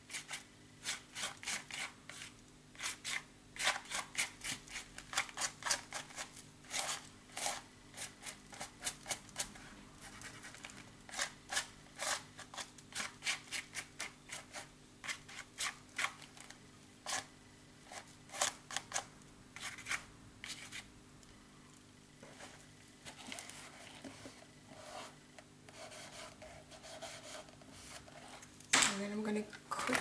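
Palette knife scraping and dabbing acrylic paint onto a paper journal page: quick, irregular scrapes, several a second, for about twenty seconds, then only a few.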